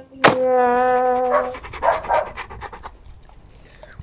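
A brass note held for about a second and a half, then dog sound effects: a couple of short bark-like yelps followed by rapid panting that fades out.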